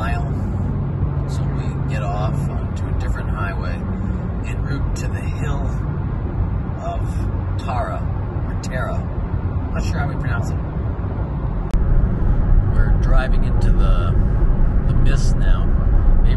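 Steady road and engine rumble inside a moving car's cabin at motorway speed, with faint talk over it. About twelve seconds in, the rumble steps up louder.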